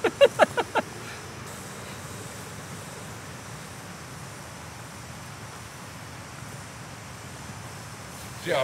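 Small backpacking gas stove burning on a fuel canister with a steady hiss, after a few short sharp sounds in the first second.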